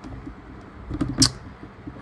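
A pause between speakers: faint room tone with small mouth noises, a lip click about a second in followed by a short breath.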